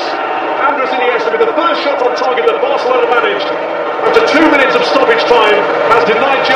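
A man's voice, likely match commentary, over loud stadium crowd noise.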